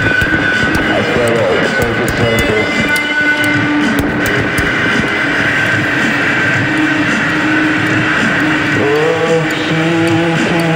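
Dense, distorted passage of an experimental psych rock song: long held tones over a busy, noisy bed with light ticking high up. About nine seconds in, a sliding guitar line and a lower held note come in.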